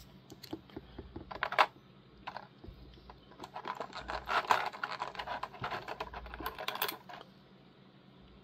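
Small plastic accessory parts clicking and rattling against a clear plastic blister tray as they are picked out by hand: scattered light clicks at first, a denser run from about three and a half seconds in, stopping shortly before the end.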